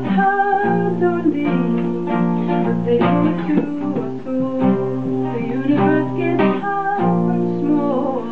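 Acoustic guitar strumming chords with a violin bowing a sustained melody over it, an instrumental passage between sung lines of a folk song.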